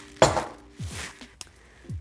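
Kitchen utensil clinking against a pot or dish, one sharp clink about a quarter second in, with lighter handling sounds after.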